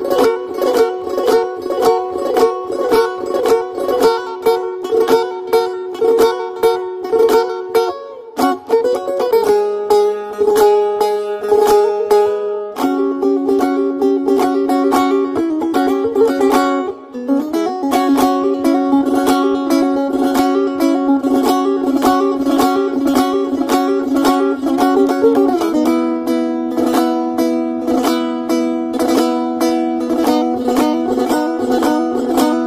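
Plucked string instrument music: quick, evenly repeated strummed notes over a held drone. The pitch shifts to new notes a few times, with brief breaks about eight and seventeen seconds in.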